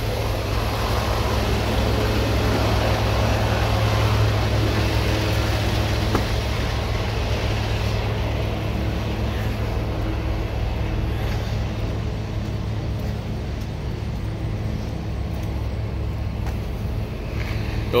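Diesel engine of a Freightliner Cascadia semi truck idling steadily. A wider rush of noise is strongest over the first several seconds and then eases.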